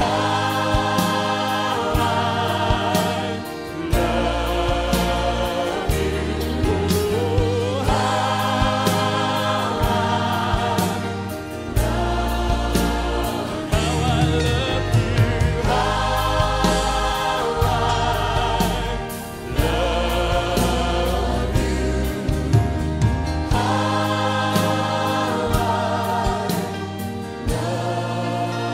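A choir singing a praise-and-worship song with band accompaniment: bass and drums under sung phrases that pause briefly every few seconds.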